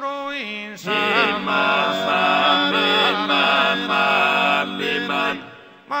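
Sardinian canto a tenore: a four-part male vocal group singing unaccompanied in close harmony, the deep throaty bassu and contra voices holding a drone under the lead voice's melody. The chord breaks off briefly about a second in and fades near the end before the next phrase starts.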